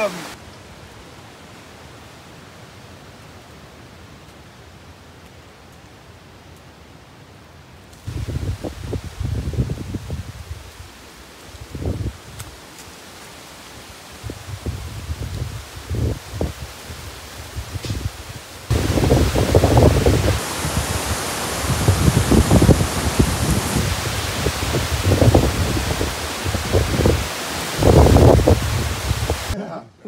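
Wind gusting on the microphone and through palm fronds, with leaves rustling. A faint steady hiss for the first eight seconds or so, then irregular gusts that grow louder and more frequent past the middle.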